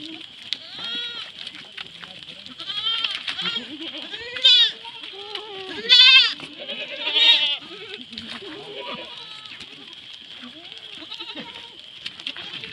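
A herd of goats bleating: half a dozen wavering calls one after another, the loudest in the middle, over a steady high hiss.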